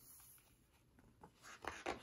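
Faint rustle and slide of paper as a hand turns a page of a hardcover picture book, a few short scuffs building in the second half.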